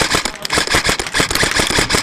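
Airsoft electric rifle firing on full auto: a fast, even rattle of shots, more than ten a second, in a long burst.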